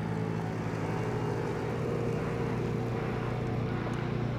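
Small utility vehicle's engine running steadily as it drives past close by and pulls away, a low even hum with a faint tone above it that thins out near the end.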